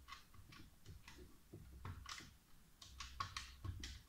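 Faint clicks of the plastic keys on a small 8-digit electronic calculator being pressed one after another as a number is keyed in: about a dozen presses at an uneven pace.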